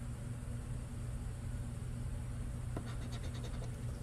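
Faint scraping of a scratcher coin rubbing the coating off a lottery scratch-off ticket, over a steady low hum.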